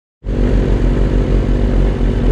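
Sport motorcycle engine running close by: a steady engine note with a pulsing low end, starting abruptly just after the start.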